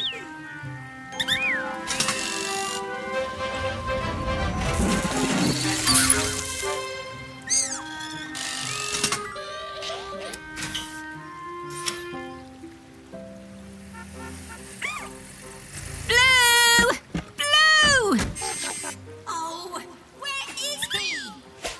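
Cartoon background music with sound effects: several short whistle-like pitch glides, and two loud, wobbling electronic warbles near the end.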